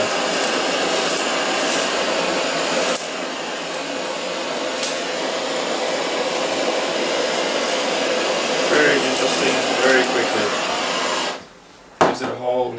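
High-output butane culinary torch (BBT-1 torch head) burning with a steady hiss as it sears the skin of a pork roast, with occasional sharp pops from the skin in the first seconds. The flame cuts off suddenly near the end.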